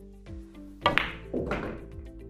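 A hard pool shot about a second in: a sharp crack as the cue tip strikes the cue ball, then a second crack a split second later as the cue ball hits the object ball. A duller knock and rumble of balls against the cushion or pocket follows. Background music with a steady beat plays throughout.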